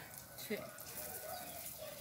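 Ripe bananas frying in oil in a skillet, a faint steady sizzle.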